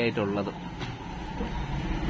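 A man's voice speaking briefly, then a steady low background rumble with no distinct event.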